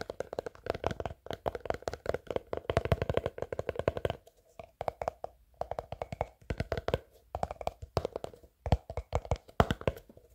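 Fast fingertip tapping on a clear plastic cotton-swab tub: quick runs of sharp, hollow-sounding taps with short pauses between them.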